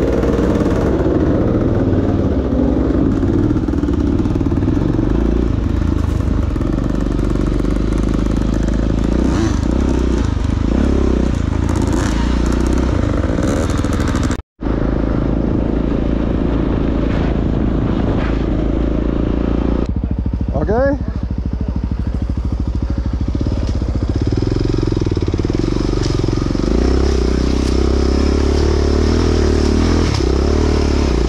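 Dirt bike engines running while being ridden off-road, the engine note rising and falling with the throttle. The sound drops out for a moment about halfway through.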